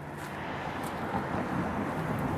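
Steady outdoor background noise with no distinct event, slowly getting louder.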